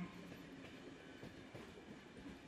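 Faint, steady rumble of a subway car running along the rails.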